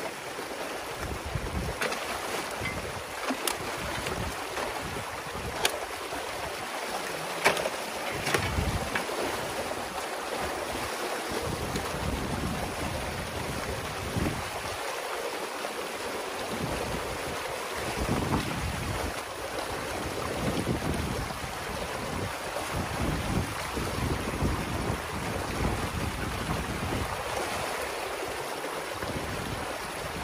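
Water rushing steadily through a breach in a beaver dam, with a few sharp clicks in the first eight seconds and low surges that come and go.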